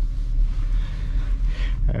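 Hyundai i30 Wagon heard from inside the cabin while driving: a steady low rumble of engine and road noise.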